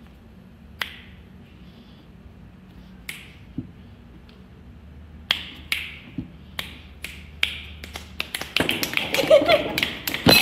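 Finger snapping: a few scattered snaps, then snaps about every half second from around five seconds in, building to a fast flurry of snaps with voices near the end.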